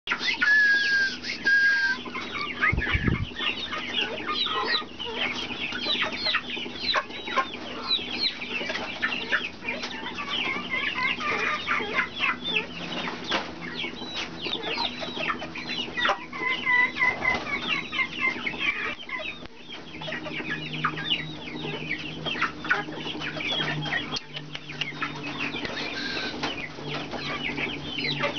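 Senegal parrot chattering in a fast run of short chirps and squeaks, with a held whistle near the start and another about halfway through. A single low thump comes about three seconds in.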